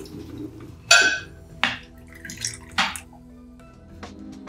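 Soft background music with glassware and cutlery clinking at a dinner table: a sharp, ringing clink about a second in, then two more clinks.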